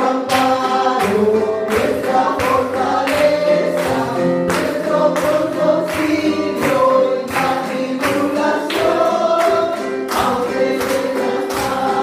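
Church congregation singing a praise song together over a steady beat of about two strokes a second.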